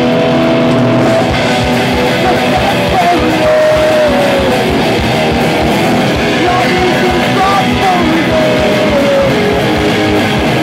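Live rock band playing loud, electric guitars driving, with a singer's vocal through a microphone on top.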